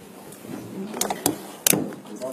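A few sharp knocks or clicks over faint room noise, the loudest near the end.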